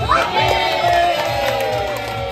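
A group of children cheering and shouting together, a sudden burst of many voices followed by long drawn-out calls, over background music with a steady beat.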